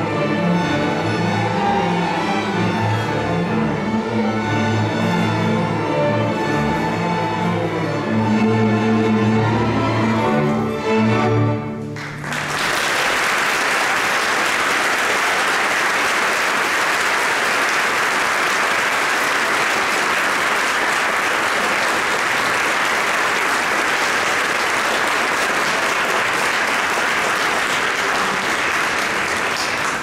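A middle school string orchestra plays the closing bars of a piece, ending on a loud final chord about twelve seconds in. The audience then breaks into steady applause.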